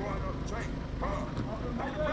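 Indistinct distant shouts and chatter of soccer players over a steady low background rumble.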